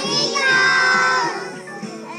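A young boy singing a solo into a microphone, with music behind him; he holds one long note through the middle.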